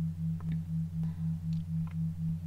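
Low electronic tone pulsing about four times a second over a steady lower hum: a meditation backing track of the kind used for brainwave entrainment.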